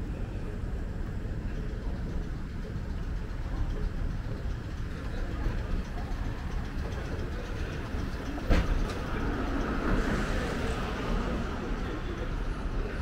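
Moving walkway running with a steady low mechanical rumble, with a single sharp clack about eight and a half seconds in.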